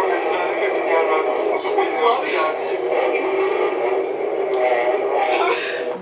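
A continuous stream of indistinct, overlapping voices from video footage being played back.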